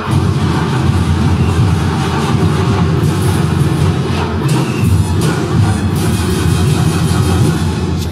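Loud performance music with a heavy, rumbling low end and a pulsing drum beat.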